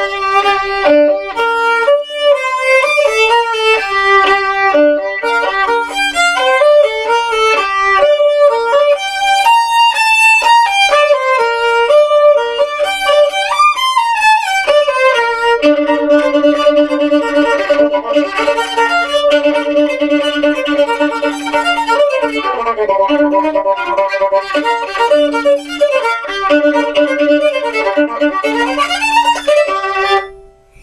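Solo violin played unaccompanied: quick melodic runs of bowed notes, then from about halfway a low note held as a drone under the melody, with upward slides between notes. The playing stops at the very end.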